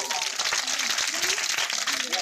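Audience of schoolchildren clapping: dense, steady applause, with a voice faintly underneath.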